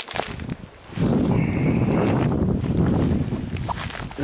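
Steady rustling and rumbling noise, starting about a second in, of someone pushing through low wild blueberry bushes and grass close to the microphone.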